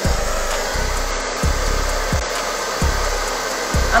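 Handheld hair dryer running on its cool setting, a steady rush of air blown over a wig's lace at the hairline to set the tint, with a low pulse of air buffeting the microphone about every two-thirds of a second.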